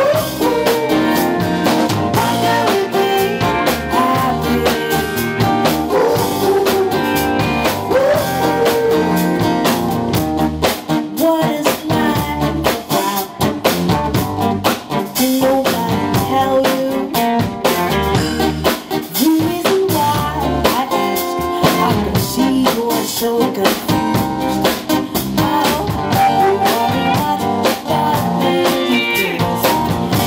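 Live band playing a song, with acoustic and electric guitars, bass, drum kit and keyboard, and a woman singing lead.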